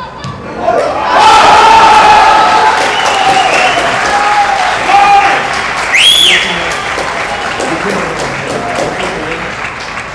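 Stadium crowd erupting in cheers and shouts about a second in as a goal is scored, then slowly dying down. A short, high whistle that rises and falls sounds over it about six seconds in.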